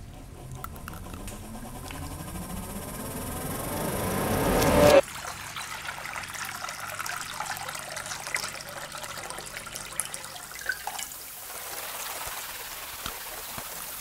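Acousmatic electroacoustic music made from processed recordings: a dense swell of rising sweeps grows louder for about five seconds and cuts off suddenly, giving way to a quieter trickling, water-like texture with scattered small clicks.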